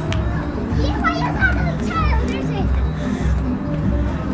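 High-pitched children's voices calling out for about a second and a half, starting about a second in, over music with a steady, repeating beat.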